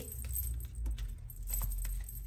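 A deck of Lenormand cards being shuffled by hand: a light, irregular rustle and clicking of cards, with a low handling rumble underneath.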